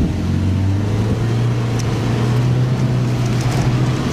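Subaru Outback's 2.5-litre flat-four engine pulling as the car speeds up, heard inside the cabin over steady road and tyre noise. Its low hum rises a little in the first second, then holds a steady pitch.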